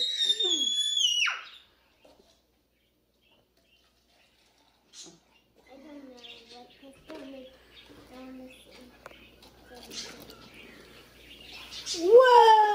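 A small child's excited high-pitched squeal that slides down in pitch and cuts off about a second and a half in. After a few seconds of near silence, quiet voices follow.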